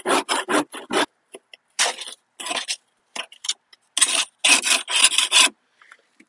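A hand scraper scraping compacted, caked-on grass clippings off a Simplicity Regent mower deck's parts to break it free. It comes in quick runs of short strokes with brief pauses, the longest run near the end.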